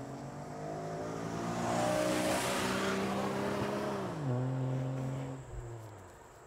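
A car driving past on a road. Engine and tyre noise swell to a peak about two seconds in, the engine's pitch drops sharply about four seconds in as it goes by, and then the sound fades away.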